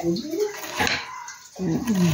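A person's voice in the background, with a short rising and falling sound near the start and a falling one near the end, over a noisy background.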